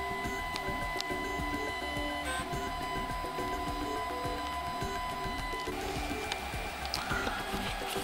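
Stepper motors of a Prusa i3 A602 RepRap 3D printer whining as the print head moves during a print. Their pitch jumps every fraction of a second with each move, over a steady high tone that stops about six seconds in.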